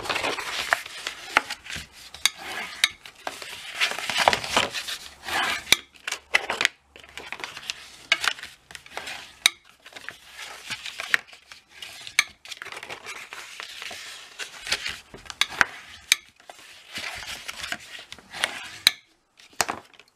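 Cardstock being folded along its score lines and creased with a bone folder: repeated scraping swishes of the folder rubbing over the paper, broken by sharp clicks and taps of card and tool on the cutting mat.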